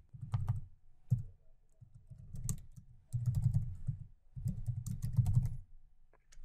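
Computer keyboard being typed on in several short bursts of keystrokes, with brief pauses between them.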